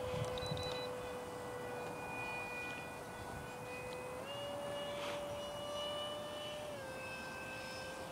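Electric ducted-fan motor of an RC F-18 Hornet jet whining in flight: a steady tone that steps up in pitch about four seconds in and drops back down near seven seconds, following the throttle.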